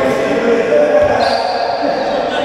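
Racquetball rally: the ball smacked by racquets and off the court's hard walls, two sharp hits about a second apart, echoing in the enclosed court.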